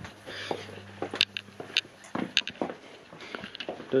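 Footsteps and light knocks of handling as someone walks with a handheld camera, a string of short irregular clicks, with a faint steady low hum in the first second or so.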